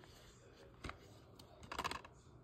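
A plastic DVD case handled and turned over in the hand: one click a little under a second in, then a quick run of clicks near the end.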